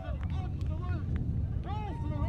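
Steady low rumble of wind noise on the microphone, with a man's voice speaking over it, clearer near the end.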